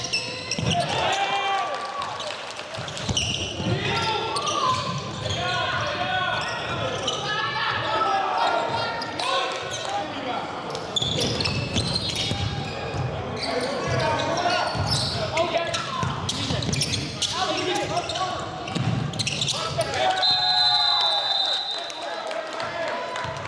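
Live basketball game sound in a large gym: players and spectators shouting and talking over each other, with the ball bouncing on the hardwood floor. A high, steady whistle blast lasting about a second and a half comes near the end.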